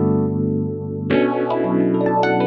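Sampled electric piano played on a Kurzweil PC4 with its phaser on: a held chord, then a new chord struck about a second in, its tone swept by the phaser.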